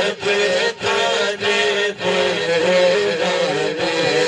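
A man sings an Urdu naat unaccompanied into a microphone, amplified through a PA, in long wavering, ornamented phrases broken by short breaths. A steady low drone sustains underneath.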